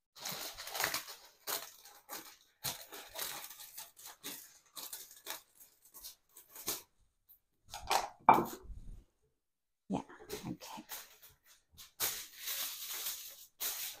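Aluminium foil crinkling and rustling in irregular bursts as a sheet is cut from the roll and handled, with one louder knock about eight seconds in.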